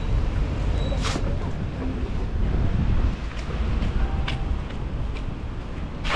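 Outdoor city street ambience while walking: wind rumbling on the microphone over traffic noise, with a few short hisses, the clearest about a second in.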